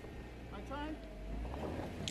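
Jeep Wrangler engine running at low revs as it crawls up a rock ledge, a steady low rumble. A faint voice calls out briefly about half a second in.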